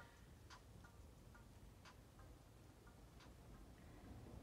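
Near silence: room tone with about eight faint, short ticks at uneven intervals.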